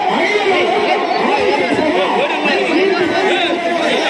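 A dense crowd of men all talking and calling out at once, many voices overlapping with no single voice clear.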